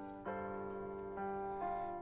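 Instrumental accompaniment of a slow worship song between sung lines: sustained chords that change about a quarter second in and twice more past the middle.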